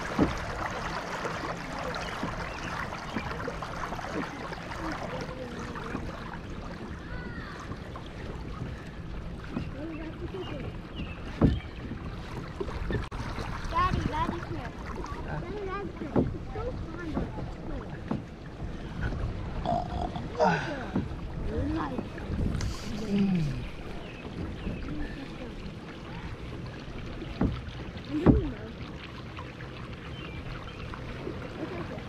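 Water running and lapping along a Hobie kayak's hulls as it moves across a lake. Several sharp knocks cut through it, about a third of the way in, around halfway and near the end.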